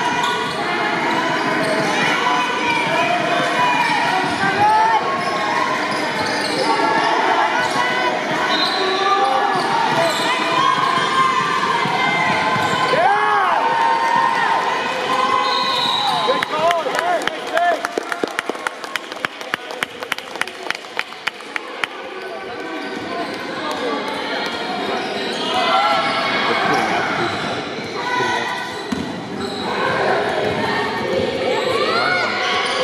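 Youth basketball game on a hardwood gym floor: sneakers squeaking as players cut and stop, with voices calling out on court. Past the middle, a quick run of ball bounces on the floor goes on for about five seconds.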